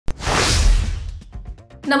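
Whoosh sound effect of a news intro: a sharp click, then a rushing swell with a deep low rumble that fades out within about a second.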